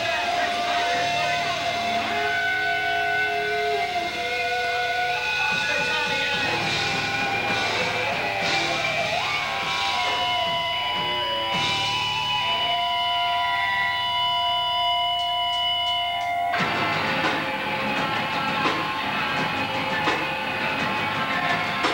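Live hardcore punk band starting a song: held, ringing distorted electric guitar notes that change pitch every few seconds, with a few cymbal crashes. About two-thirds of the way through, the full band comes in at once, drums and distorted guitars playing together.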